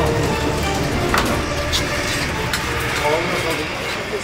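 Indistinct talking over background music, with two sharp clicks, about a second and two and a half seconds in.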